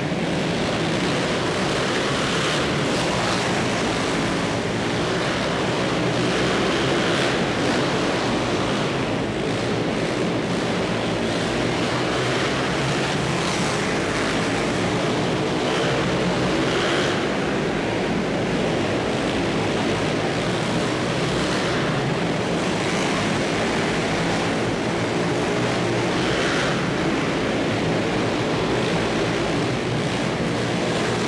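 Ice speedway motorcycles racing in an indoor arena, their engines running under a steady wash of crowd noise that fills the hall.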